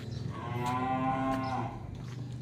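Young Simmental cattle mooing: one long call at a steady pitch, lasting about a second and a half.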